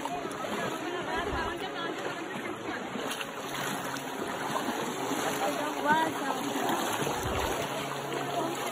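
Shallow stream running over stones, with feet splashing as they wade through the water. Voices are heard faintly under the water sound.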